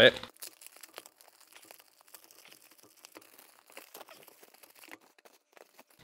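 Plastic padded mailer envelope being torn open and handled, giving faint, irregular crinkling and small crackles.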